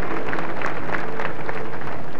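Audience applauding: many irregular claps over a steady crowd wash.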